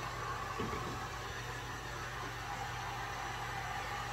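Corded heat gun running steadily, blowing hot air to dry a coat of paint.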